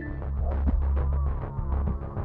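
Suspense film score: a low throbbing drone with short low hits about a second apart.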